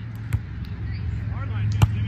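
A volleyball struck by players' hands and forearms in a rally: a light contact about a third of a second in, then a louder, sharper hit near the end, with brief shouted calls between.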